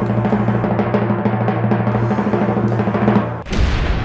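Drum roll sound effect from a random comment-picker draw, rapid steady strokes that end a little over three seconds in with a final hit, as the winner is revealed.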